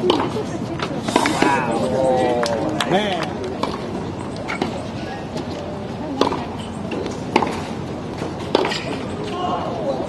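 Sharp single knocks of a tennis ball being hit or bounced on a hard court, the last three about a second apart. A person's voice talks for about two seconds starting about a second in and briefly again near the end.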